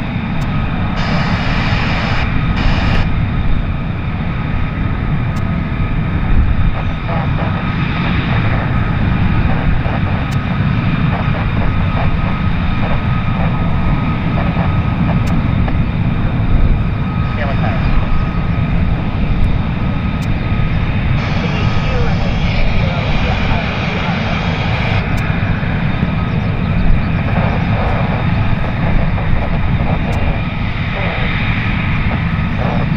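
F-35B fighter jet engines running at taxi power: a loud, steady jet rumble with a thin steady high whine over it.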